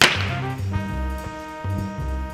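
A sharp whip-like swish sound effect at the very start, fading over about half a second, laid over background music with held notes and a steady bass beat.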